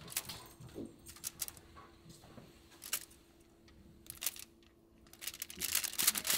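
Metal fork clicking and scraping on a foil-lined baking sheet as the backbone is picked out of a baked trout: a scattering of light, irregular clicks with a faint steady hum underneath.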